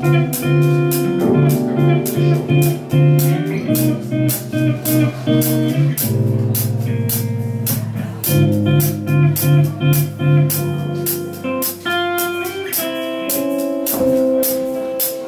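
Live band music led by an archtop hollow-body electric guitar playing chords, over repeated low notes and drums keeping a steady cymbal beat.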